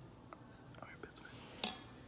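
Faint, indistinct voice, like the other end of a phone call, with a few light handling clicks; the sharpest click comes about one and a half seconds in.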